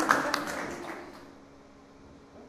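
A small audience clapping, thinning to a few scattered claps and dying out within the first second. After that only quiet room tone with a faint steady hum remains.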